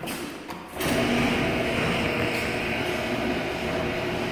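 Electric garage door opener starting about a second in and running steadily, its motor and drive raising a sectional garage door partway.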